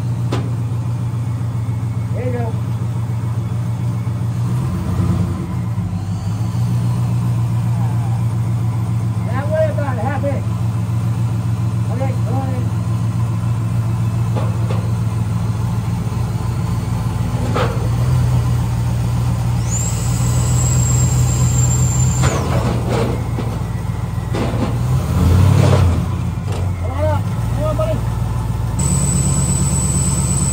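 Car engine running steadily at idle, a low even hum with small shifts as the car is eased forward. A thin high whine comes in briefly about two-thirds through and again near the end.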